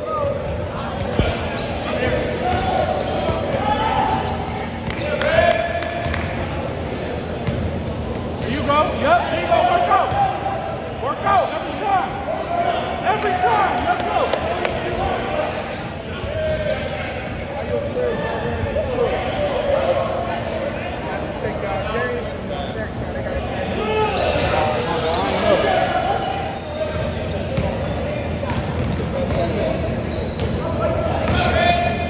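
Basketball game sound in a gymnasium: a ball bouncing on the hardwood court again and again, amid indistinct shouts and chatter of players and spectators.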